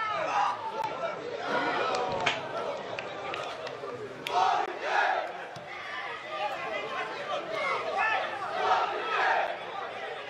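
Live football-ground sound: men's shouts and calls from the pitch and a sparse crowd of spectators, heard throughout, with a couple of sharp knocks in the first half.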